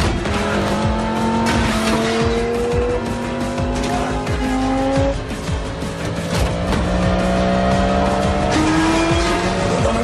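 A sports car's engine accelerating hard, its pitch climbing through each gear and dropping back at upshifts about halfway through and near the end, with tyres squealing, under dramatic film music.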